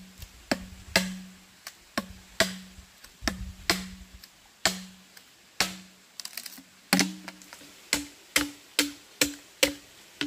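A machete chopping green bamboo: a series of sharp, hollow knocks, each ringing briefly in the tube. About seven seconds in, the strikes come faster, roughly two to three a second, and ring higher.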